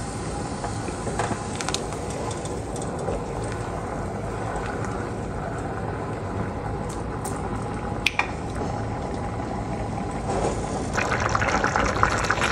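Chicken stock boiling hard in a stainless steel pot, a steady bubbling, stirred with a spatula; a single knock on the pot about 8 s in. The sound grows louder near the end as rice is stirred into the boiling stock.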